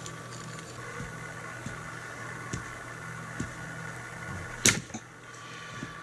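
Braided fishing line under load against a spring scale, with a few light handling ticks, then snapping with one sharp crack about three-quarters of the way through. The line breaks at about 10 kg.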